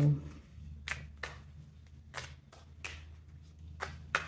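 A tarot deck handled and shuffled by hand: a series of short, sharp card taps and flicks, about seven over the few seconds, as the cards are squared and shuffled.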